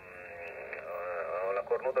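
A man's voice received over single-sideband on a Xiegu G90 transceiver tuned to the 20-metre band. The sound is narrow and cut off above about 3 kHz. It starts weak and blurred and grows louder, becoming clear speech near the end.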